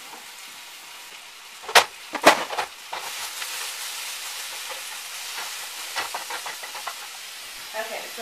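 Spinach sizzling as it sautés and cooks down in a skillet, stirred with a spatula, with small scraping clicks. Two sharp knocks come a little under two seconds in, before the sizzle rises from about three seconds in.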